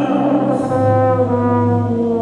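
Euphonium playing a long, sustained low note that comes in about two-thirds of a second in and holds, over other held accompanying tones.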